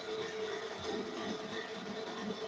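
Faint, steady sound from a television playing a live broadcast of a crowded event, with crowd noise and some music coming through the TV speaker.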